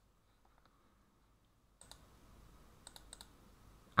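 Faint computer mouse clicks, a few short ones near the end, over a low hiss that comes in about halfway through.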